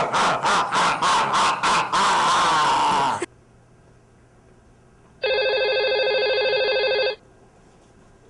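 A loud, quick string of 'ah, ah, ah' cries, about four a second, runs into one held cry that cuts off about three seconds in. About five seconds in, a telephone gives one electronic ring about two seconds long.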